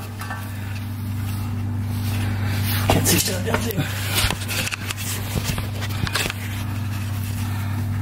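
Scattered light metallic clinks and knocks, mostly in the middle seconds, over a steady low hum.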